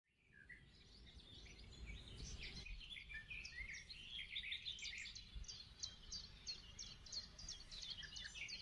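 Faint birdsong fading in: many quick, high chirps from several small birds, one after another, over a soft background hiss.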